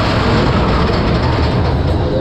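Big Thunder Mountain mine-train roller coaster running along its track, heard from a seat on the train: a loud, steady noise of the moving cars.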